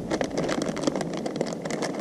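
Plastic soft-bait package crinkling as it is handled: a steady run of small, quick crackles.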